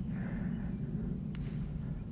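Steady outdoor background: a low rumble with a faint hiss above it, and one soft click a little past halfway.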